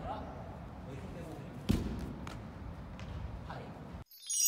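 A single heavy thud, a body or hand hitting the wrestling mat, a little under two seconds in, with a few lighter taps and scuffs of grappling on the mat around it over gym room noise.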